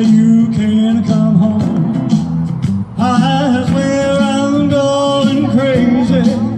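A male singer sings into a microphone over backing music, heard through PA loudspeakers. In the second half he holds one long note.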